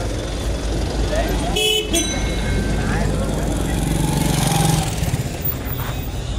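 City street traffic: vehicle engines running past in a steady rumble, with a short horn toot about one and a half seconds in. Voices of passers-by mix in.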